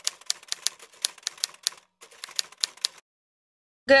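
Rapid, irregular light clicking, like keys being typed, about five clicks a second, stopping about three seconds in.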